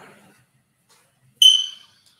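A single short, high-pitched ping about one and a half seconds in, fading away over half a second.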